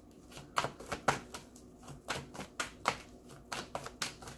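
A deck of oracle cards being shuffled by hand: a run of irregular soft clicks and slaps, several a second.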